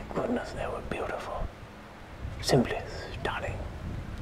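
A man whispering close to the microphone, in two short stretches with a pause between.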